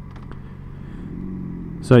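Yamaha XJ6 Diversion F's 600 cc inline-four engine running at low revs as the bike rolls slowly in traffic. It gets slightly louder and higher towards the end.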